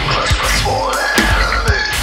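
Djent-style heavy metal song: distorted guitars and drums with a screamed vocal line. The bass and drums drop out briefly just before the middle.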